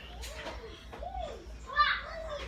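A young child's voice, faint and high, making a few short rising-and-falling sounds, with a brief louder burst near the end.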